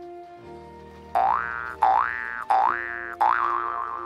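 Cartoon comedy sound effects over a soft background music bed: four quick rising-pitch 'boing' effects about two-thirds of a second apart. The last one ends in a wobbling tail that fades out.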